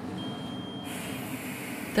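A long breath blown into the mouthpiece of a Bedfont Micro+ Smokerlyzer carbon monoxide breath monitor: a steady breathy hiss that sets in about a second in, over low room noise.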